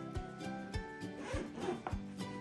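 A zipper on a hard-shell carrying case being run open, over background music with a steady beat.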